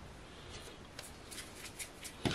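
Faint, soft rubbing and a few light taps of hands picking up a ball of cookie dough and rolling it into a rope on a baking mat.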